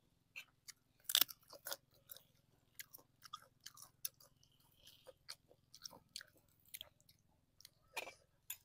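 Close-up chewing of crunchy food: irregular sharp crunches and wet mouth clicks, the loudest about a second in.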